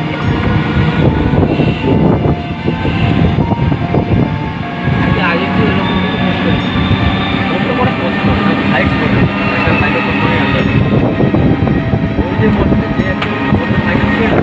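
Loud, steady rumble of a moving road vehicle heard from on board, engine and road noise running throughout.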